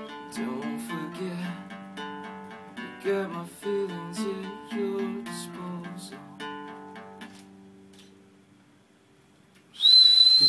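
Acoustic guitar playing the closing chords of a song, with the last chord ringing out and fading away over several seconds. Just before the end, a loud, high, steady whistle cuts in.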